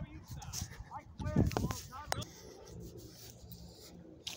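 Geese honking: a quick series of short, arched calls in the first half, then quieter.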